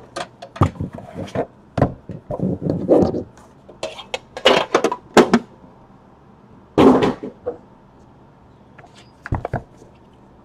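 Cardboard trading-card boxes being handled: a lid lifted off, boxes set down and picked up, making a series of knocks, taps and sliding scrapes, with the longest scrape about seven seconds in and two knocks near the end.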